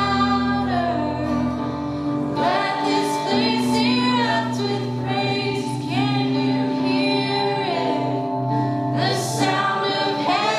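Live worship band playing a song: several voices, a woman's among them, singing in phrases over steady guitar chords.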